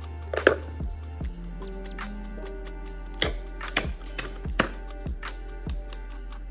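Soft background music, with a handful of sharp plastic clicks and taps from felt-tip markers being handled in a plastic art-set case, the loudest about half a second in.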